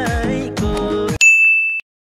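A song with a singing voice cuts off abruptly a little over a second in, replaced by a single high, bright ding sound effect that holds steady for about half a second.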